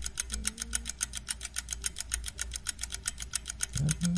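Rapid, very even clicking or ticking, about ten strokes a second, over a low steady hum.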